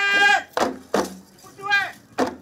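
A dance troupe's long hand drums and voices: a loud held cry cuts off about half a second in, two drum beats follow, and a short falling call comes near the end.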